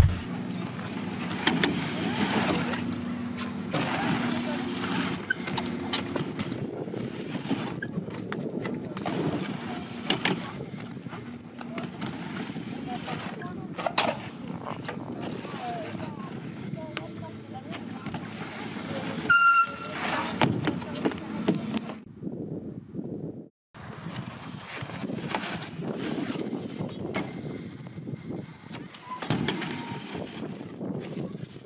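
BMX bike ridden on a mini ramp: the tyres rolling and humming across the ramp surface, with occasional sharp knocks of the wheels and frame on landings and transitions. A brief high squeak comes about two-thirds through, and a short break follows a little later.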